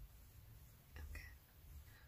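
Near silence: faint low room hum, with a faint short sound about a second in.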